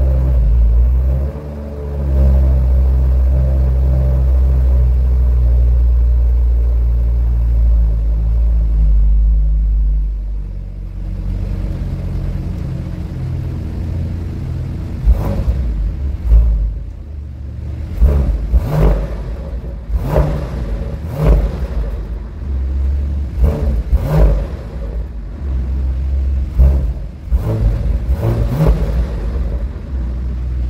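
Bentley Continental GT's twin-turbo 6.0-litre W12 engine running, heard from the exhaust. It holds a steady high idle, settles to a lower idle about ten seconds in, then takes a series of about a dozen short, sharp throttle blips in the second half.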